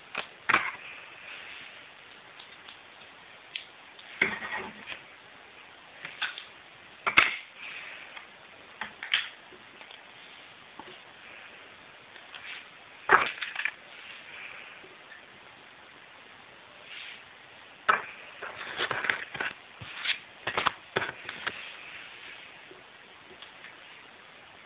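Irregular, scattered clicks and knocks of small objects being handled, a few seconds apart, coming closer together in the last third.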